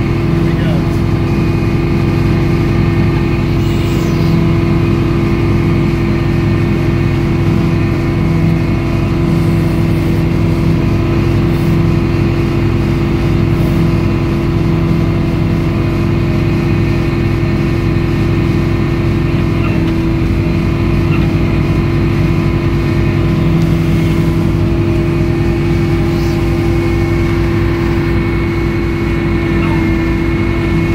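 Edmiston hydraulic circular sawmill running steadily: its power unit and hydraulics drone loudly with a constant hum, unbroken throughout. About twenty seconds in the low rumble takes on a pulsing beat.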